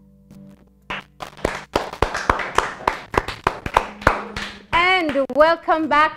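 The band's last notes fade out, then a small group of people clap by hand for about four seconds, applauding the end of a live song.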